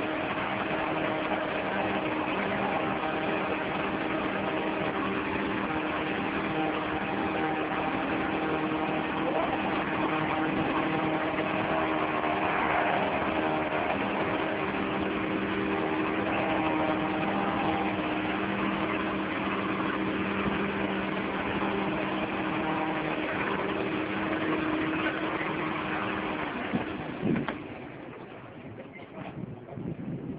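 An engine running steadily with a constant hum, cutting out shortly before the end.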